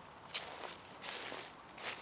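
A few faint, short bursts of rustling and crunching on dry leaves and gravel, with a small click about a third of a second in.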